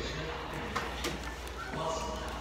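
A person chewing fried chicken and handling its paper wrapper, with a couple of short clicks about a second in. Faint background voices.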